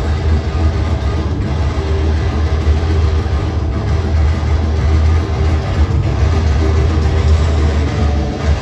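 A metal band playing live at full volume: distorted electric guitars, bass and drums through a large PA, recorded from within the crowd with a heavy, boomy low end.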